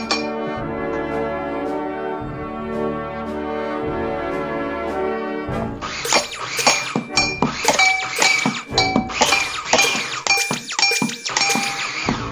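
Band music with sustained brass chords. About halfway through, a rapid run of clinks and taps on household objects joins in over the band, with a repeated high ringing note.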